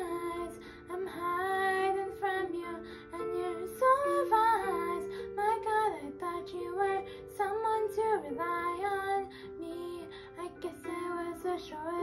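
A girl singing solo over instrumental accompaniment, in phrases of held and sliding notes with brief breaths between them.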